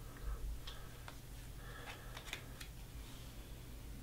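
Baseball trading cards being shuffled through in the hand: faint scattered clicks and soft rubs of card stock as cards are slid off the top of the stack, over a steady low hum.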